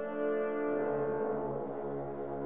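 An ensemble of French horns playing a held chord, with a lower note joining underneath about two-thirds of a second in.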